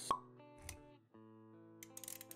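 Intro sound effects over background music: a sharp pop just after the start, then a short low thud, over sustained music chords that drop out briefly about a second in and come back.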